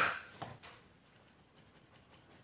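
Kitchen utensils clinking: a sharp clink of glass and metal right at the start as the small glass dish of baking powder meets the stainless-steel flour sieve and glass mixing bowl, dying away quickly. A softer knock follows about half a second in, then only faint handling sounds.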